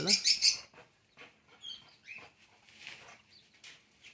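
A few faint, high-pitched bird chirps, one of them a short falling note about a second and a half in, over scattered soft clicks.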